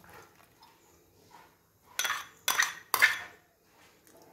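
A metal spoon clinks and scrapes against the side of a cooking pot three times, about half a second apart, as thick boiled tapioca is stirred.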